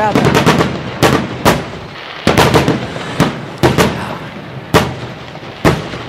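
Fireworks bangs: a rapid, irregular run of about a dozen sharp cracks over several seconds.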